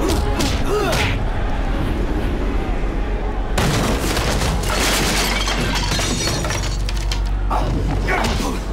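Film soundtrack of music and voices, cut into about three and a half seconds in by a sudden, loud, crash-like burst of noise that lasts about four seconds.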